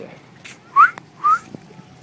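A person whistling two short, rising whistles about half a second apart.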